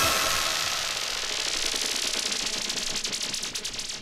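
Hard-trance breakdown with the kick drum and bass dropped out, leaving a hissing noise sweep over a fast, rattling synth pulse. It fades a little and cuts off at the very end.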